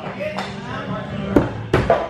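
Two throwing axes striking wooden plank targets in quick succession about a second and a half in, two sharp thuds.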